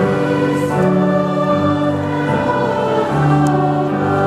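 Live performance of a carol by a small school ensemble, long held notes moving to a new note about every second.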